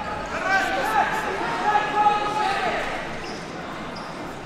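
Wrestling shoes squeaking on the mat as two wrestlers grip-fight on their feet, with voices shouting in a large hall. The sound eases off over the last second or so.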